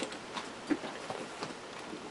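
Faint rustle of cotton fabric pieces being handled on a cutting mat, with a few light scattered taps.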